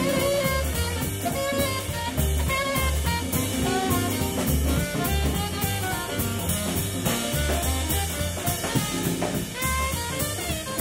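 A live jazz big band playing swing: a saxophone line leads over a walking bass and a drum kit keeping time on the cymbals, with the brass section behind.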